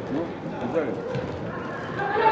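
Shouts from footballers and coaches echoing in a large indoor football hall, with a few faint knocks.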